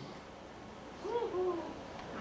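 A short hummed vocal sound from a person, like "hmm" or "ooh", about a second in, rising and then falling in pitch.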